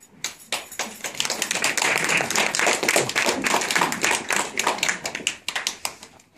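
An audience applauding, starting just after the sound begins and thinning to scattered claps near the end.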